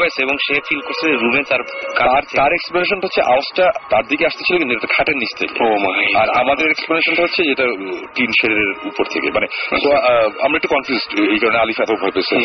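Continuous talking, a person's voice heard over a radio broadcast with the treble cut off.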